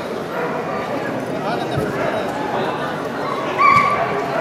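Background chatter of a crowd in a large hall, with a dog giving a short high-pitched whine near the end.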